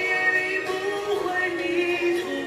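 Chinese-language Christian song: a sung melody with held, gliding notes over instrumental backing.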